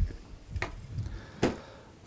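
A few light clicks and knocks from small tools and wire being handled on a tabletop, spaced about half a second apart.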